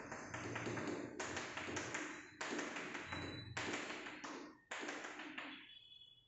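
Chalk on a blackboard, rapid tapping and scratching as rows of short dashes are drawn. It comes in five runs of about a second each, each starting sharply.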